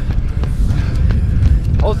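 A runner's footsteps and breathing at fast pace, under a steady low rumble of wind on the microphone.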